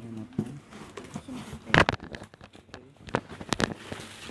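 Cardboard box and plastic packing being handled while a box is unpacked: rustling and crinkling with a few sharp crackles and knocks, the loudest about two seconds in.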